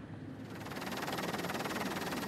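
Helicopter rotor noise: a steady, rapid beating that swells in over the first second.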